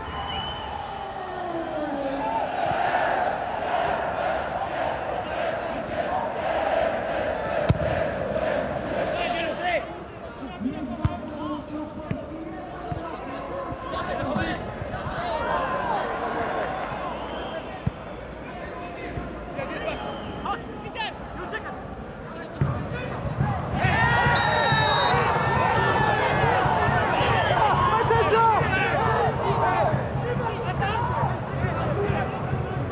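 Football stadium crowd noise with occasional dull thuds of the ball being kicked. About 24 s in, a short referee's whistle sounds after a foul and the crowd gets louder, breaking into whistling that lasts to the end.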